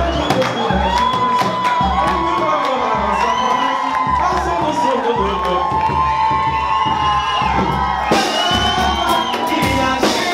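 Live pagode music: deep drum beats keep a steady pulse under voices singing long held notes, with a crowd cheering and singing along.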